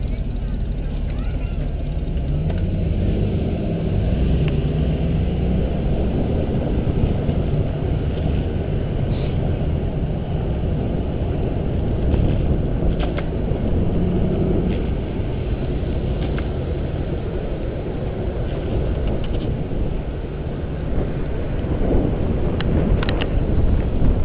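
Steady rush of wind and rolling road noise on the microphone of a camera riding on a moving bicycle, with a few brief clicks.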